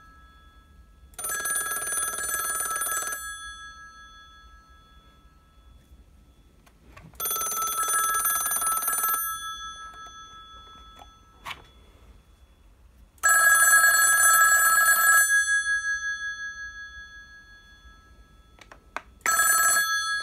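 Western Electric 2500DM Touch-Tone desk telephone's mechanical bell ringer ringing, rung from a line emulator. It rings in the standard US cadence: about two seconds of ringing every six seconds, each ring fading out after. There are three full rings, and a fourth starts near the end.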